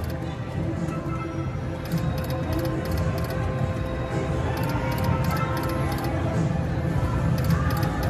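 Pop and Pay slot machine's game music playing while the reels spin, over a steady low casino-floor hum.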